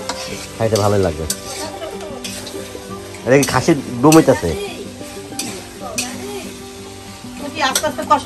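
Spiced food frying and sizzling in a steel wok over a gas flame, stirred with a metal spatula that scrapes and clicks against the pan. Short bursts of voices come in about a second in and again around the middle.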